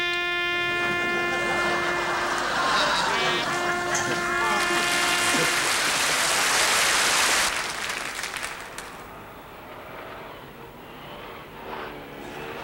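A brass instrument holds one long note, breaks off, and holds the same note again for about two seconds. A loud burst of audience applause comes in under it and cuts off suddenly about seven and a half seconds in, leaving quieter outdoor street noise.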